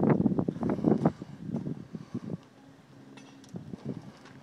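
Wind buffeting the microphone in gusts, strong for about the first two seconds and then easing off to a quieter background with a faint low hum.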